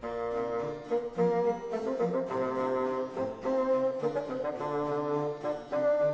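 Background music: a slow piece of several sustained instruments playing chords together, beginning abruptly where the previous music cuts off.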